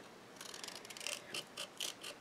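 Small pointed craft scissors snipping through designer series paper in a quick series of short, faint snips as a little rectangle is cut away from a corner.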